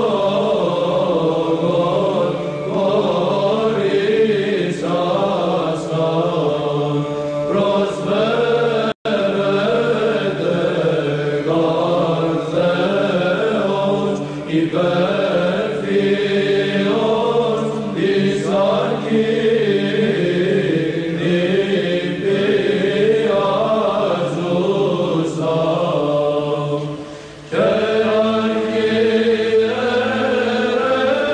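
Greek Byzantine chant: voices singing a slow, ornamented melody over a steady held drone (the ison). It breaks off for an instant about nine seconds in, and it drops briefly near the end before a new phrase starts.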